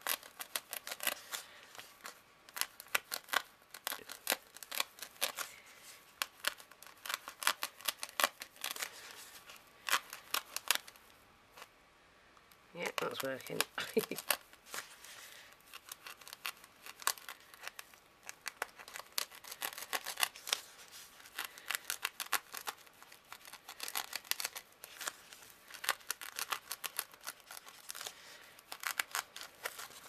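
A craft knife cutting through a sheet of packing foam, heard as a rapid run of crackling clicks that pauses briefly near the middle and then carries on.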